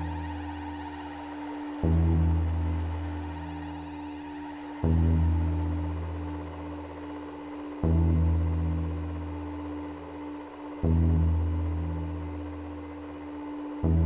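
Ambient electronic music on software synthesizers (Cherry Audio's Elka-X and PS-3300): a deep bass note starts sharply about every three seconds and fades away, over a steady held tone.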